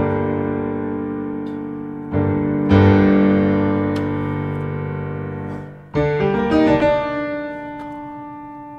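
Improvised piano playing. A chord is struck and held, with more notes added about two and three seconds in, and it rings and slowly fades. Near the six-second mark a quick run of notes leads into another chord that dies away.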